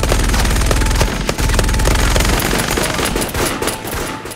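Heavy, rapid battle gunfire with a deep rumble underneath. It starts abruptly and thins to scattered shots near the end.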